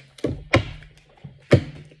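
Deck of reading cards knocked and slapped against a tabletop while being shuffled: three sharp thunks, two close together and a third about a second later.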